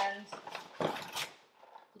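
Hands rummaging in a paper grocery bag: a few short crinkles and knocks as a clear plastic clamshell container of blueberries is pulled out.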